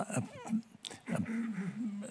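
Speech only: a man hesitating, with a short "uh" and then a long, held "uh" about a second in.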